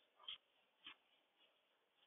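Faint strokes of a duster wiping a chalkboard: two brief rubbing sounds about half a second apart, over quiet room hiss.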